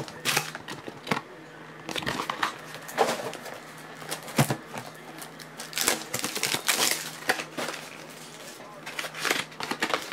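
Trading-card boxes and foil packs being handled: irregular taps and knocks of cardboard with short crinkles of foil wrappers, over a steady low hum.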